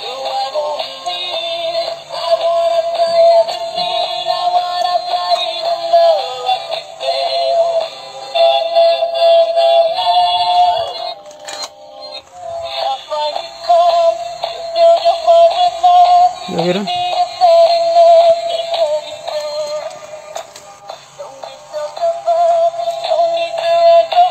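A battery-operated dancing robot toy's sound chip playing its tinny electronic tune with a synthetic singing voice, loud and continuous apart from a brief dip about halfway through. It keeps playing with its battery compartment opened and the batteries out.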